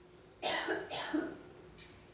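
A person coughing close to the microphone: one harsh burst of about a second, starting about half a second in.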